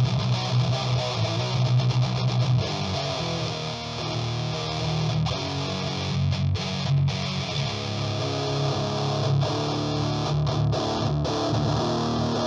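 Electric guitar played through an Exar Squealer SR-04 distortion pedal, heavily distorted, while the pedal's EQ knobs are turned. A fast chugging riff runs for the first couple of seconds, then gives way to held notes and chords.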